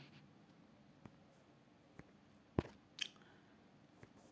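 A quiet room with four short, faint clicks spread about a second apart; the loudest comes about two and a half seconds in.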